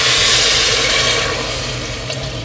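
Water poured from a jug into a hot pressure cooker of freshly fried lamb trotters and spices, a loud hissing splash that is strongest in the first second and then eases off.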